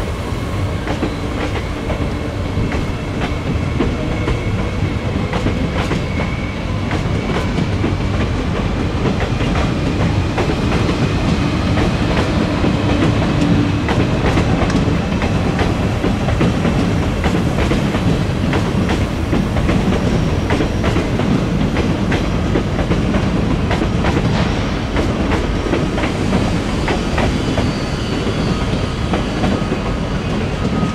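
Double-deck Omneo Premium electric train running along the station tracks: a steady rumble with wheels clicking over rail joints and a faint whine that slowly rises in pitch. It is loudest around the middle.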